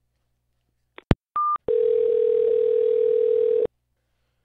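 Telephone line sounds as a call is placed: a sharp click about a second in, a short high beep, then a steady low phone tone for about two seconds that cuts off abruptly.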